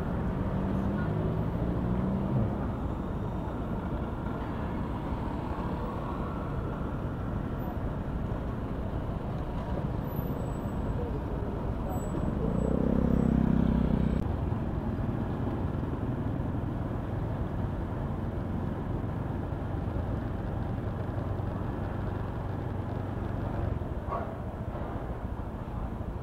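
Steady city road traffic noise, with one louder engine passing about halfway through.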